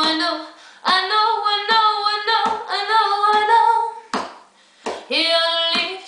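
A woman singing sustained, wavering notes to her own nylon-string classical guitar, with a sharp percussive stroke on the guitar about every 0.8 s. The voice breaks off for about a second just past the middle.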